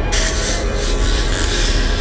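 Film soundtrack sound effect: a harsh, rasping hiss that swells in just after the start over a low rumbling drone.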